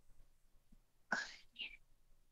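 A short, soft, breathy vocal sound from a person about a second in, with a fainter one just after; otherwise quiet.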